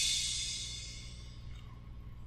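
The end of a song ringing out and fading steadily away, its high hissy wash dying down to a faint low hum.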